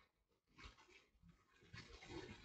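Near silence: room tone, with a couple of faint, soft sounds about half a second in and near the end.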